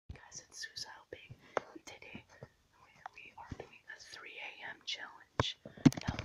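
A person whispering close to the microphone, with a few sharp clicks and knocks from the camera being handled, the loudest near the end as it swings away.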